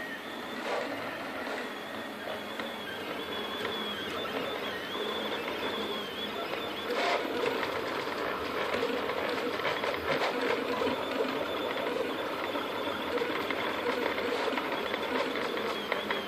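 Picaso 3D Builder printer printing: its stepper motors whine in a high tone that wavers up and down in pitch as the print head moves, over a steady whirring bed of motor and fan noise, with a few faint clicks.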